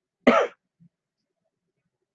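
A man clears his throat once, briefly, a quarter of a second in.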